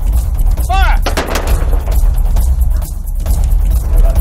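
A volley of black-powder flintlock pistols fired together with blank charges: one sharp crack about a second in, with a short echoing tail.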